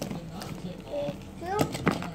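A toddler's short, high spoken "thank you" while the stiff pages of a pop-up board book are flipped, with a sharp tap near the end.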